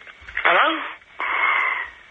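A phone-in caller says "Hello?", then a steady hiss-like noise runs for nearly a second, both heard over the phone line.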